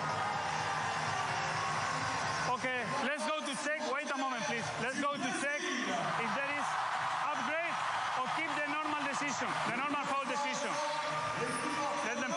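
Officials talking on the referee's microphone during an instant-replay review, starting about two and a half seconds in, over a steady hum of arena crowd noise.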